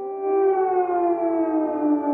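Air raid siren sounding, several tones together gliding slowly down in pitch.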